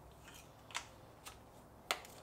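PVC pipe and fittings knocking and clicking together as a T fitting is pushed onto a short pipe by hand. There are a few short clicks, the loudest just before the end.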